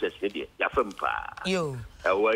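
Speech heard over a telephone line, thin and cut off at the top and bottom. About a second and a half in, one drawn-out voice sound slides down in pitch.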